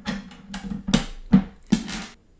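Small plastic colour-code tiles of an Intelino smart train set clicking and clattering as they are handled and snapped onto the track: about five sharp clicks, the loudest in the second half.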